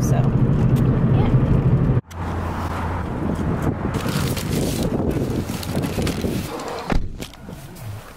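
Steady car-cabin engine and road hum for the first two seconds. After a sudden cut, a plastic mailer package rustles as it is pulled from a metal mailbox, and a single knock sounds about seven seconds in.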